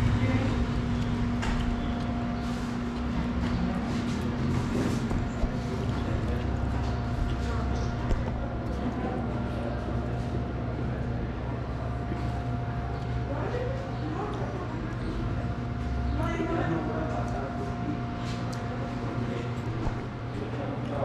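Ambience inside an open-fronted taco stand: indistinct background voices and street traffic over a steady low hum.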